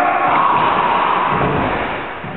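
A group of voices shouting and yelling together, the battle cries of a staged fight, easing off toward the end.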